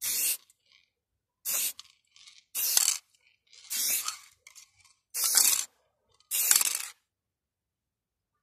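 Aerosol spray paint can hissing in six short bursts, each under a second long, about one every second and a quarter.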